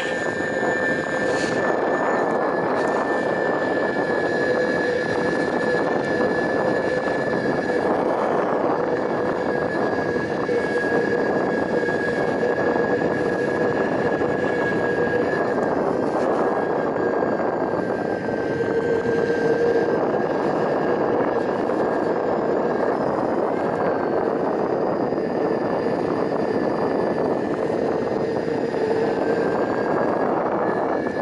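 Metro Board electric skateboard's motor whining at two steady pitches over the steady roar of its wheels rolling on asphalt, carrying a rider uphill. The whine wavers slightly in pitch about two-thirds of the way through.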